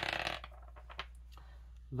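Small astrology dice thrown onto a wooden tabletop, clattering for about half a second as they scatter and settle, with one more small click about a second in.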